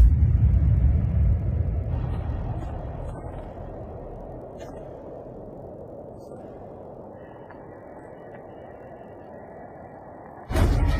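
Instrumental-removed pop song audio in a gap between vocal lines: a deep bass rumble fades away over the first four seconds or so. It leaves a faint, steady, murky wash of leftover processing residue, and a thin high tone comes in near the end.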